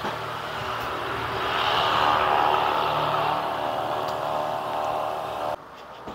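A motor vehicle passing on the road below: engine and tyre noise that swells to a peak about two seconds in and fades, then cuts off abruptly near the end.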